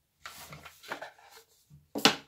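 Faint rustles and light taps of handling noise, with a sharper tap right at the end.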